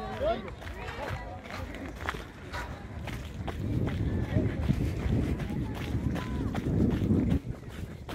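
Indistinct voices outdoors. From about three and a half seconds in, a low rumble builds, then cuts off suddenly shortly before the end.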